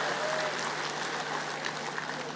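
Audience in a large hall applauding, with a few voices mixed in, slowly fading away.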